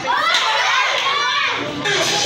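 A group of young children chattering and calling out, several high-pitched voices overlapping.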